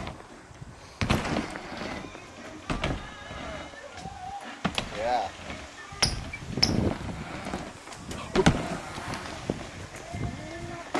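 BMX bike riding a wooden mini ramp: tyres rolling on the plywood, with about seven sharp knocks and thuds spread through it as the wheels land and strike the ramp and its coping.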